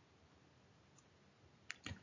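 Near silence: faint room hiss, with a few soft clicks near the end.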